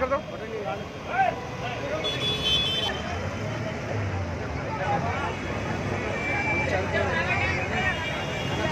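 A JCB backhoe loader's diesel engine running steadily, with several people talking around it.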